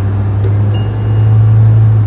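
Low, steady rumble of road and wind noise inside a Mahindra Scorpio-N's cabin while driving, swelling in the second half as the SUV draws past a container truck, then easing off as it clears it.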